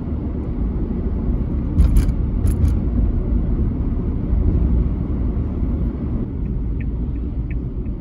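Steady low rumble of road and engine noise inside a moving car's cabin, with a couple of sharp clicks about two seconds in and a faint, regular ticking near the end.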